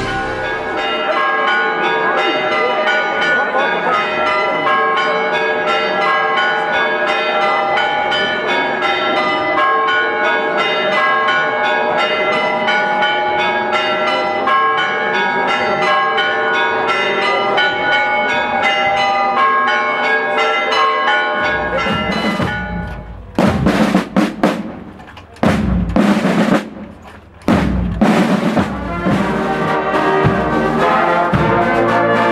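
Church bells ringing in a fast, continuous peal of many overlapping pitches. From about 22 seconds in, loud, irregular strikes on marching-band drums take over.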